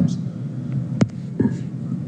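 A pause in speech over a steady low background hum, with one sharp click about a second in.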